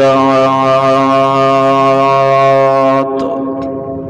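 A man's voice holding one long, steady chanted note at the end of a line of Arabic praise verse, breaking off about three seconds in.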